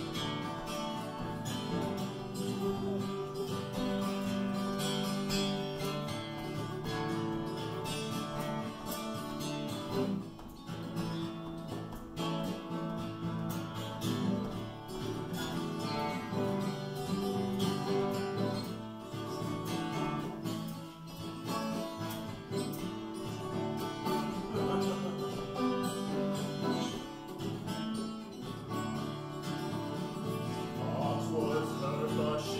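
Solo acoustic guitar playing an instrumental passage between the verses of a folk song, a steady run of picked and strummed notes.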